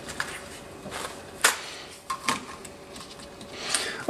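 Handling noise of a kitchen knife and small containers on a wooden cutting board: light scraping with a few sharp taps, the loudest about a second and a half and two and a quarter seconds in.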